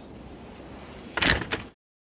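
Faint steady hiss, then a short, loud sliding rustle lasting about half a second, a little over a second in. The sound then cuts off to silence.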